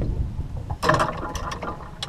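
A brief, sharp clatter and hiss of handling noise about a second in, from a fish and tackle being handled while a small perch is unhooked, over a steady low rumble of wind on the microphone.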